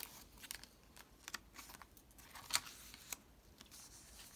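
Paper and card being handled and a journal page turned: soft rustling with scattered light clicks and taps, the sharpest about two and a half seconds in.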